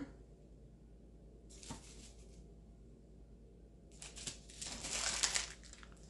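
Soft rustling and light knocking as biscotti slices are set down on a parchment-lined baking sheet and the sheet is handled: a short rustle with a small knock about a second and a half in, then a longer, louder rustle about four seconds in.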